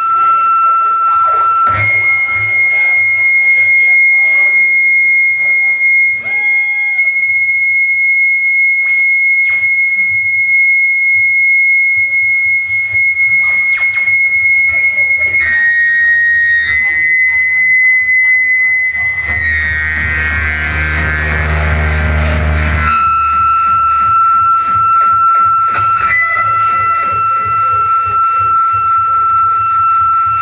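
Harsh-noise electronics from a table of effects pedals: a loud, held, piercing high tone with a stack of overtones. It jumps to a higher pitch about two seconds in, with swooping glides over it. Near the end it breaks into a few seconds of dense, distorted low rumble, then the first high tone returns.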